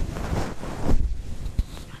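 A practice golf swing: the club swishing through the air together with clothing rustle, rising to a peak just under a second in, then a single short knock about a second and a half in.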